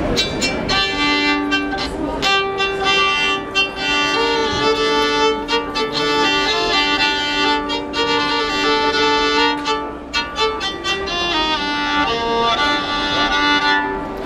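Medieval-style bowed fiddle (vielle à archet), held upright and bowed, starting about a second in: a short melody of sustained notes with a steady lower note held underneath.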